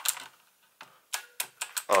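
Keys of a Corsair K70 mechanical keyboard with clicky Cherry MX Blue switches pressed about half a dozen times in uneven succession, each a sharp click. A rubber 40A-R O-ring has just been fitted under the S keycap to cushion bottoming out, giving a smoother, less metallic sound.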